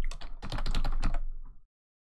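Fast typing on a computer keyboard: a quick run of keystrokes entering a short search term, stopping suddenly about one and a half seconds in.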